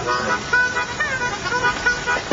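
Car running at a standstill, with indistinct voices talking over the engine.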